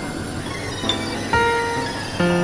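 Experimental synthesizer music: a noisy drone bed with a short bright ping about a second in, then a held chord of several steady, squealing tones that enters sharply just after.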